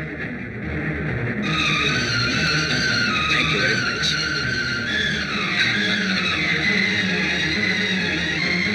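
Dramatic film background score: high, wailing tones that slide up and down enter about a second and a half in, over a low sustained drone.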